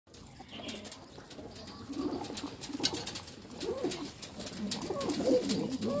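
Domestic fancy pigeons cooing. Several overlapping calls build up over the second half and grow louder.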